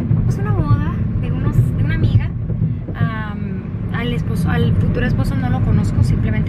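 Steady low road and engine rumble inside a moving car's cabin, with a person talking over it.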